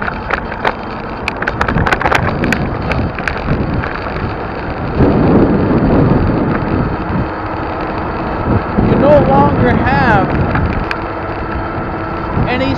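Wind on the microphone and road traffic noise while riding along a multi-lane road, with louder stretches about five and nine seconds in.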